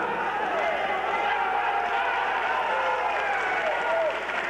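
Indistinct, overlapping voices echoing in a large sports arena, with no single voice clear.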